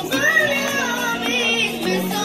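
A boys' choir singing a Hebrew piyyut (liturgical poem) together, the melody ornamented and bending up and down.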